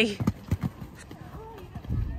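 Horse's hooves thudding on a sand arena as it lands after a show jump and canters away, a few short dull knocks in the first second.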